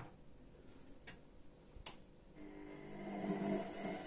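Front-loading washing machine being started: a few sharp clicks as its start button is pressed and the machine engages, then about two and a half seconds in a steady hum sets in and grows slightly louder as the machine begins its cycle.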